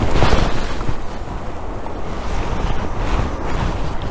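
Wind buffeting the microphone: a steady rushing noise with a fluttering low rumble, a little stronger in the first half second.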